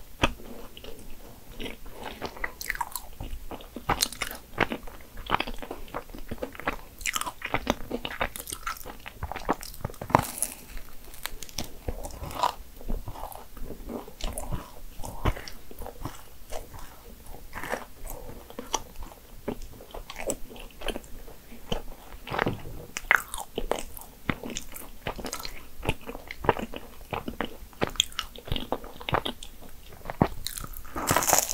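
Close-miked chewing and biting of a soft Nutella financier: a dense, irregular run of small wet mouth clicks and smacks, picked up by a mic clipped at the collar.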